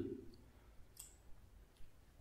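Nearly silent room with one faint, sharp click about a second in and a fainter one near the end.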